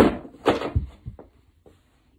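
Handling noise from a board being moved and set down: two loud knocks about half a second apart, then two faint clicks.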